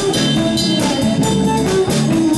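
Live electric blues band playing an instrumental passage: amplified blues harmonica, cupped against a vocal microphone, plays held notes over electric guitar, keyboard and a drum beat.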